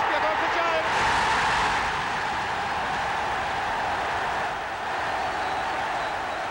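Football stadium crowd cheering a goal: a loud roar swells about a second in and holds steady.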